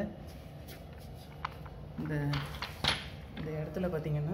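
A few sharp clicks and light knocks of hard plastic stand parts being handled, with a man's voice briefly in between.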